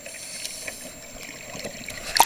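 Underwater noise heard through a submerged camera: a steady wash with scattered faint clicks and crackles.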